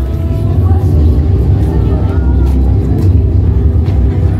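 Outdoor crowd ambience: a loud, steady low rumble with people's voices and some music beneath it.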